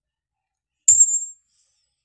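A single sharp click about a second in, followed by a brief high ringing tone that fades within half a second, like a small metal object clinking.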